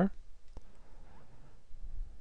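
A single sharp click about half a second in, against faint room noise.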